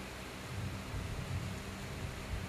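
Room tone in a pause of speech: a steady low rumble with a faint hiss, and no distinct event.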